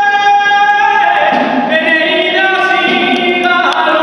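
Men singing a Valencian albà unaccompanied in long held notes that step from pitch to pitch, with a slide downward near the end.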